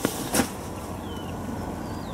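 Two short handling clicks, then a steady low background hum with a few faint bird chirps.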